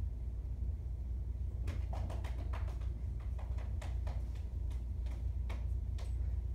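Steady low room hum, with a run of about a dozen light, irregular taps or clicks from about two seconds in until shortly before the end.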